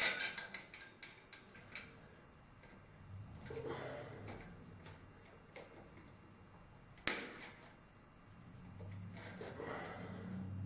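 Light metallic clinks of a chandelier's decorative chain and pliers as a chain link is worked open: a cluster of clicks at the start and one sharper click about seven seconds in.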